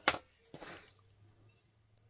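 A sharp tap of a hand tool set down on a cutting mat, then, about half a second later, a short soft rustle of a torn paper strip being handled.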